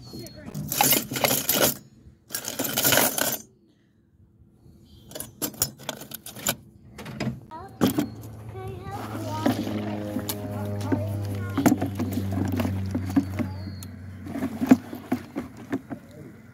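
Steel sheep-shearing combs and cutters clattering and clinking as they are tipped from a bag into a small metal bucket: two rattling pours, then a run of sharp metal clinks. A low steady hum follows in the second half.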